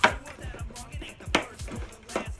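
Craft knife cutting through packing tape and cardboard on a parcel: two sharp cuts, one right at the start and one about a second and a half in, over hip hop background music with a steady beat.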